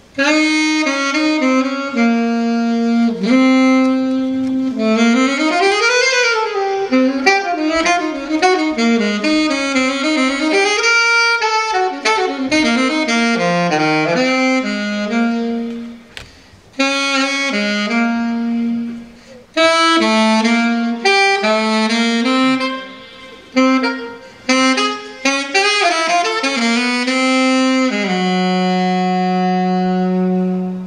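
Solo saxophone playing a slow jazz ballad in free phrases with short breaks, with notes that slide in pitch. It ends on a long held low note.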